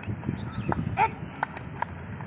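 A man's single short shouted drill call about a second in, one of a string of identical calls about two seconds apart that pace a crawling exercise. Scattered sharp clicks sound over a low outdoor background noise.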